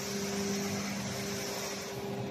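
Steady factory machinery hum: a low even drone with a higher tone an octave above it, over a constant hiss.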